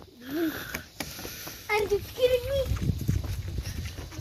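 Short snatches of voices, a brief call near the start and a longer sing-song utterance about two seconds in, over a low rumble on the microphone and a faint steady hiss.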